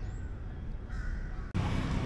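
Outdoor ambience with a low rumble and a faint, distant bird call, cut off suddenly about one and a half seconds in by louder street traffic noise.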